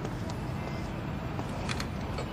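City street ambience: a steady low rumble of road traffic, with a couple of sharp clicks about one and a half seconds in.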